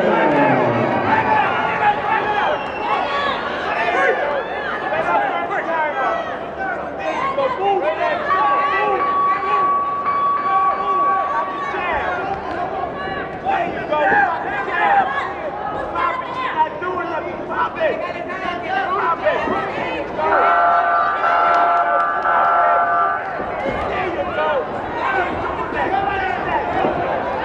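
Crowd of spectators in a large hall, many voices talking and calling out at once during an amateur boxing bout. A steady high tone sounds for about four seconds in the middle, and a chord of several steady tones, like a horn or buzzer, sounds for about three seconds near the end.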